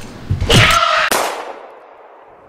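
A loud slam about half a second in, followed by a second sharp hit about a second in, then a tail that fades away.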